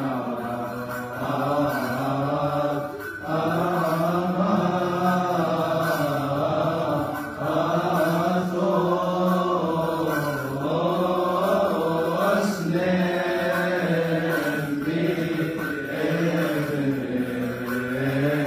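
Coptic Orthodox liturgical chant at Vespers, sung by men's voices in long, held notes that waver and glide slowly in pitch, with brief breaths between phrases.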